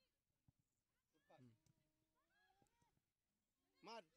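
Faint, distant shouting voices on a football pitch, one call drawn out for over a second, then one louder, brief shout near the end.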